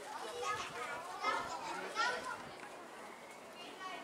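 Background voices of visitors, children among them, talking and calling out, mostly in the first couple of seconds, with no clear words.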